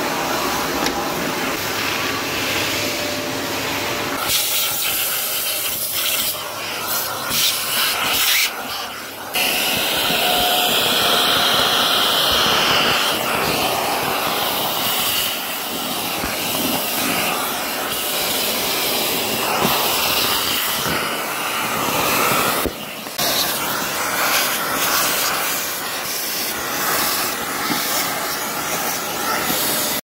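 Hilti VC 40-MX wet/dry vacuum running and sucking up dust and debris through its hose, a steady rushing hiss that shifts in pitch as the nozzle moves over floor and bench. Short thumps break into the sound about 9 seconds in and again near 23 seconds: the knock of its automatic filter cleaning.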